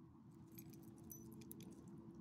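Faint metallic jingling and clicking of a small dog's collar and leash hardware as it sniffs and moves its head, over a faint steady hum.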